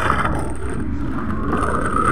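Steady low rumble of airport terminal background noise, with no distinct events.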